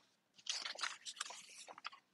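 Paper rustling and crinkling in short, irregular crackles, as sheets of notes are handled and searched through.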